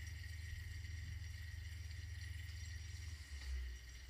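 Steady low hum with faint room noise. The hum shifts in pitch a little over three seconds in.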